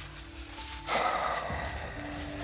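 Dramatic background music score of held, sustained notes, with a fuller, brighter layer joining about halfway through.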